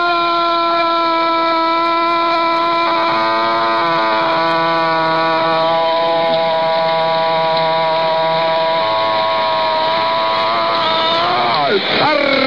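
Radio football commentator's long goal cry, a single 'gol' shout held at one steady pitch for about twelve seconds, wavering and breaking off near the end as the breath runs out.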